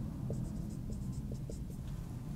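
Marker writing on a whiteboard: faint, short scratchy strokes, scattered irregularly, over a low steady hum.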